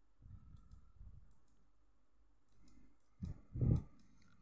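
Faint computer mouse clicks during screen navigation, followed near the end by a brief, louder low vocal sound.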